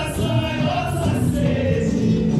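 Carnival parade music with many voices singing together, like a choir, at a steady loud level.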